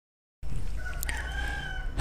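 A rooster crowing once in the background, a single drawn-out call held at a steady pitch from about a second in, over a low rumble.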